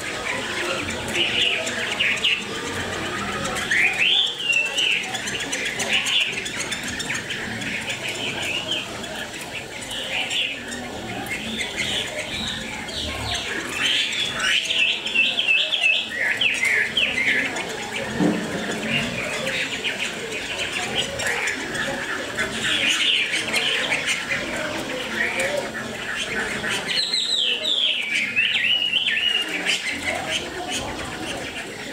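A caged Chinese hwamei (hwamei laughingthrush) singing: runs of loud whistled phrases and rapid chirps, with rising and falling sweeps and short pauses between phrases. The bird is a newly arrived wild-caught one, not yet in full song condition.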